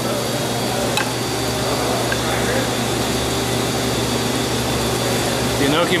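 Steady hum and whir of kitchen ventilation running in the background. A light click about a second in comes as metal tongs set food onto a plate.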